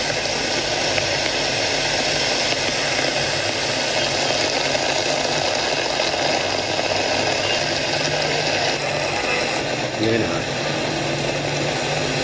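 Steady, loud rushing noise of a typhoon storm: heavy rain and fast-flowing floodwater.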